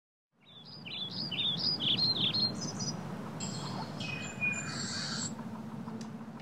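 Smartphone alarm sounding a chirping, bird-like tone: a quick run of short whistled chirps stepping up and down in pitch, then higher, longer notes, over a steady low hum.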